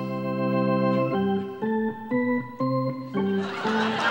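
Electronic organ playing a rousing sports-arena tune: a loud held chord, then a run of notes changing about twice a second, a pep-rally-style cue out of place at a funeral.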